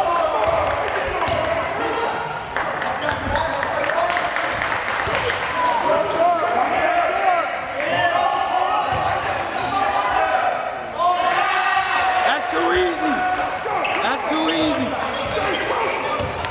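Basketball game in a school gymnasium: a ball dribbling on the hardwood floor with players' and spectators' voices calling out, echoing in the hall.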